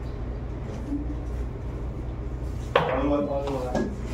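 Pool balls clacking together on a pool table as a shot is played, faint sharp clicks over a steady low hum. A short burst of a person's voice comes about three-quarters of the way in and is the loudest sound.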